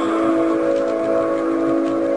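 The closing held chord of a song: several notes sustained together at a steady pitch, following the sung line that leads into it.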